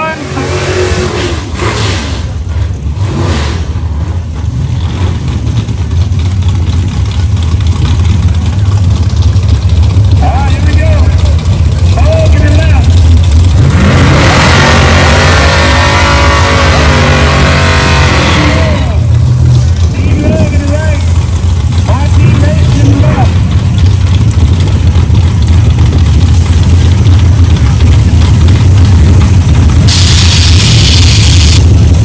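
Drag-racing hot rod engines rumbling nearby, a steady low drone that grows louder over the first several seconds. A louder surge of engine noise with pitch rising and falling lasts a few seconds near the middle.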